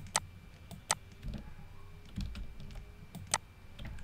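Computer mouse clicking: three sharp clicks, one right at the start, one about a second in and one near the end, with a few soft low knocks in between.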